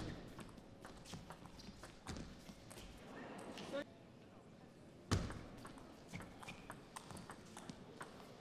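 Table tennis ball clicking off rackets and table during a rally, a string of sharp clicks at irregular intervals, with a louder knock about five seconds in. Voices in the hall murmur underneath.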